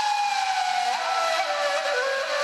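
Instrumental music led by a flute holding a long note that glides slowly downward in pitch, with a lower note taking over near the end.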